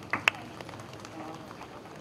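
Handheld stage microphone handled as it is passed from one person to another: a few sharp clicks and knocks in the first moment, then quiet room noise through the PA.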